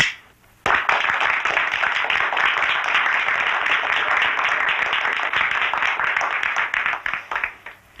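A sharp click from a pistol dry-fired without ammunition, then a small group of people clapping for about seven seconds, thinning out near the end.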